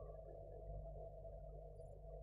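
Faint steady low hum, room tone, with no distinct sound from the batter being mixed.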